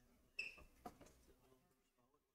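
Near silence: faint room tone of an ice rink. About half a second in there is a brief high squeak, followed by a soft click.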